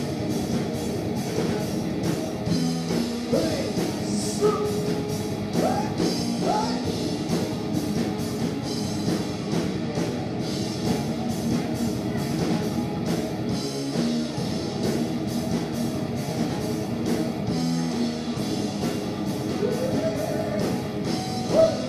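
A hard rock band playing live: electric guitars over a drum kit keeping a steady beat, with a male singer's vocals.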